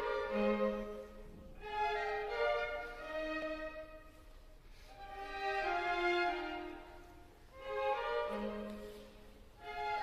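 Quiet background music of bowed strings, a violin-like melody of long held notes in slow phrases that swell and fade.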